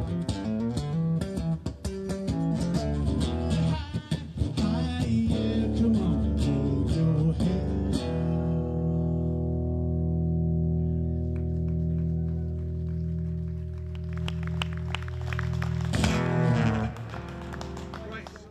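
Amplified acoustic-electric guitar played live: busy strummed chords, then a final chord left ringing for about eight seconds as the song ends, with one brief louder burst of sound about two seconds before the end.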